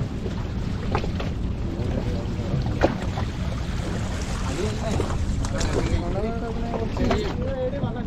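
Steady wind rumble on the microphone aboard an open fishing boat, with a few sharp knocks and men's voices talking in the background from about halfway in.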